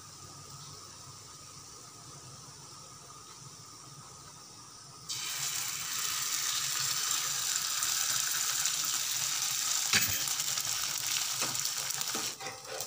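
Beaten egg sizzling on a hot non-stick tawa as it is poured over a paratha: a faint hiss at first, then a loud sizzle that starts suddenly about five seconds in and keeps going, with one sharp tap about ten seconds in.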